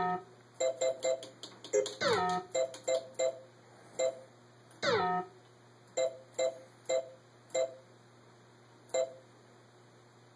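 Pinball machine's electronic diagnostic-menu sounds from its speaker: about a dozen short two-note beeps, one for each step as the operator pages through the menus and flasher test, with three falling chirps near the start, about two seconds in and about five seconds in. A faint steady hum lies under them.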